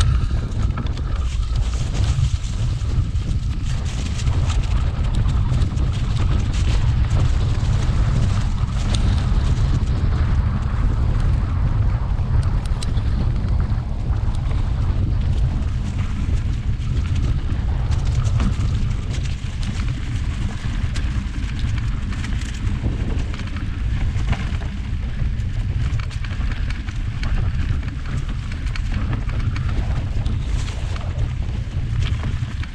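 Heavy, steady wind buffeting on a GoPro action camera's microphone while riding a mountain bike, a continuous deep rumble. Small scattered knocks and rattles come through from the bike rolling over the rough field track.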